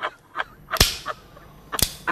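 Sparse hip-hop percussion, with no other instruments: light clicks about three times a second and two loud sharp cracks like a snare or clap, about a second apart, the first a little under a second in and the second near the end.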